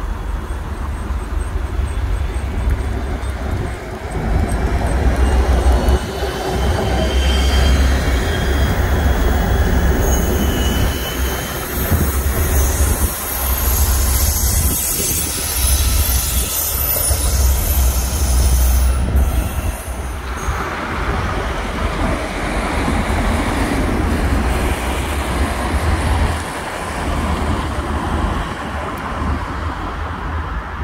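Railway wheels squealing on the track as rail vehicles move through a freight yard: several thin, high, wavering squeal tones over a heavy low rumble. The squealing cuts off abruptly a little past the middle, leaving a steady rumble.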